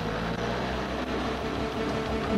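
Motorcycle engine running with a steady low drone under a rush of wind noise.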